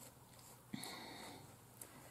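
Near silence: room tone, with one faint, brief sound a little under a second in and a tiny click near the end.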